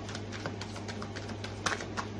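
Tarot cards being handled on a table: a quick, irregular run of light clicks and taps, with one sharper snap near the end, over a steady low hum.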